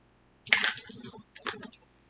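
Small toy items and their cardboard box being handled: a sharp clack about half a second in, then a second, lighter clack about a second later followed by a few soft taps.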